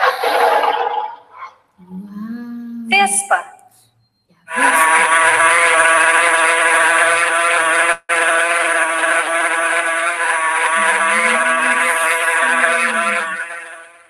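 A recorded wasp buzzing: a steady, dense buzz from about four and a half seconds in to near the end, broken once for a moment halfway. Before it, a loud sound from the lion shown on screen fades out in the first second or so, and a short pitched sound with a gliding pitch follows about three seconds in.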